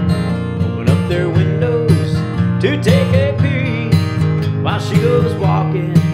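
Steel-string acoustic guitar strummed in a steady rhythm, with a strong stroke about once a second over ringing chords.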